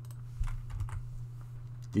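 Computer keyboard keys tapped in a few scattered light clicks, over a steady low hum.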